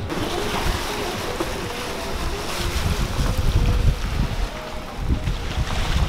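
Wind buffeting a camera microphone held out of a moving vehicle's window, in uneven low gusts that grow heavier about halfway through, over the noise of tyres on a wet gravel road.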